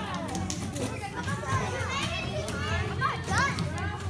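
Many children chattering and calling out at once in a classroom, voices overlapping, with scattered light knocks and clatter.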